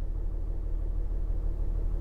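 Kia Mohave's diesel engine idling, heard from inside the cabin as a steady low hum.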